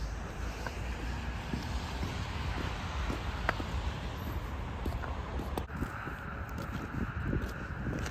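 Outdoor ambience dominated by wind buffeting the microphone: a steady, low rumbling noise with faint scattered ticks.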